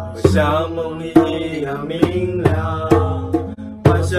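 Live acoustic cover of a Chinese folk song: men singing in Mandarin over a strummed acoustic guitar, with a djembe struck by hand.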